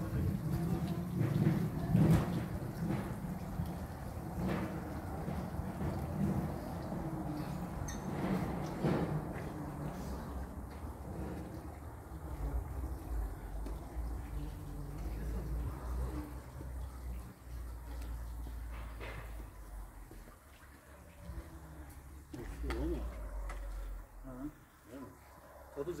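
Indistinct background voices, with a low rumble on the phone's microphone in between.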